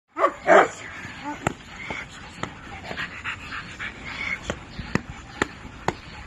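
A young Cane Corso barks loudly just after the start, then gives a few fainter short calls while a run of sharp snaps comes about every half second.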